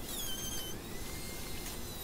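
Handheld router with a pattern bit trimming a board's edge against a straight edge, running as a steady, quiet whine whose pitch wavers slightly as it cuts.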